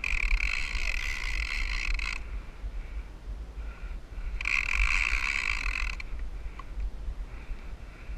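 A surf fishing reel whirring in two steady stretches, the first about two seconds long and the second, a couple of seconds later, about a second and a half, with a shark on the line. A low wind rumble on the microphone runs underneath.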